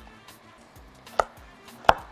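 Chef's knife slicing a carrot on a wooden cutting board: two sharp knocks of the blade meeting the board, a little over a second in and again near the end.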